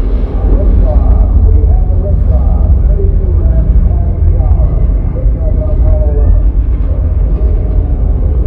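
Loud, steady low rumble of a rocket launch played over outdoor loudspeakers as the show's soundtrack, with voices talking over it.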